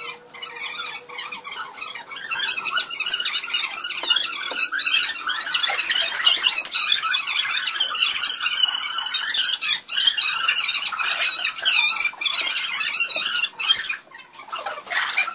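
A dense run of high-pitched squeaks and squeals with short sharp clicks, made by two performers crawling on a stage floor.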